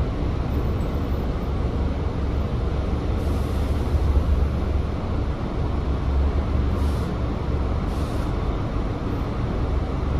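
Volvo B5TL double-decker bus idling at a standstill, heard from inside on the upper deck: a steady low engine rumble, with short hisses of air about three seconds in and twice more near the end.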